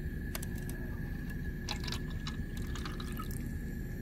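Water being poured from a glass graduated cylinder into a Styrofoam cup, heard as a faint trickle with scattered drips and splashes, most of them between about two and three seconds in.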